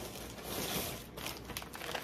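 Packaging and fabric crinkling and rustling as haul items are handled, with a few light clicks near the end.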